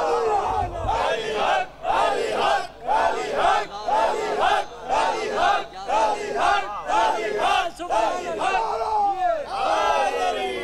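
Shouted religious slogans: a man calling out over the microphone with a crowd shouting back, in a quick, even rhythm of about one to two shouts a second that breaks off about nine seconds in.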